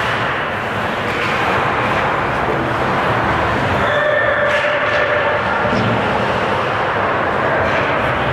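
Ice hockey game sound in an indoor rink: a steady, echoing wash of noise from skating and play on the ice and the spectators, with a brief held tone about halfway through.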